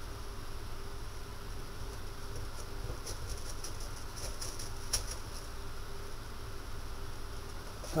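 Quiet steady low hum of room tone, with a few faint clicks and taps from a plastic bottle, a stick and a glass being handled; the clearest click comes about five seconds in.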